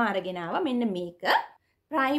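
A woman speaking, with a short pause near the end.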